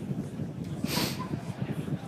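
Low, uneven rumble of wind on an outdoor microphone, with a brief hiss about a second in.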